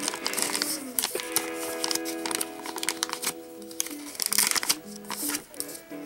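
Foil sticker-pack wrapper crinkling as it is handled and the stickers are drawn out, in short bursts, over background music with long held notes.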